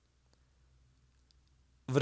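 Near silence with a few faint, soft clicks, then a man's voice resumes just before the end.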